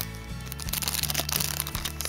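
Background music with steady low held tones, over short crinkles of a clear plastic sleeve being handled.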